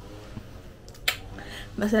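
A single sharp click about a second in, over a low steady hum, then a woman starts speaking.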